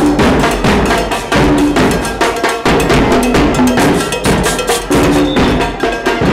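Live comparsa carnival band playing loudly: drums and cowbell keeping a dense, driving beat, with short low pitched notes cutting in every second or so.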